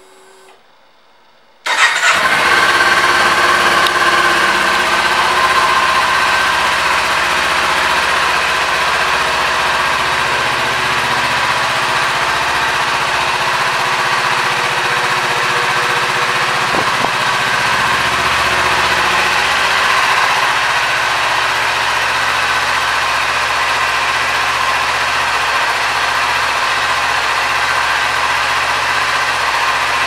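2018 Kawasaki Ninja 400's parallel-twin engine started about two seconds in, then idling steadily.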